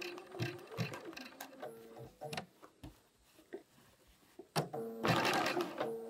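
BERNINA 570 computerised sewing machine stitching an appliqué stitch slowly, its needle strokes coming as clicks about two or three a second. It stops almost silent for a moment near the middle, then starts again with a busier run and a motor whine near the end.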